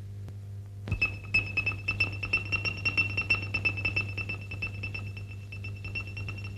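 Spy radio transceiver signal, as a film sound effect: a steady high electronic tone over rapid, irregular clicking, starting about a second in, over a low steady hum.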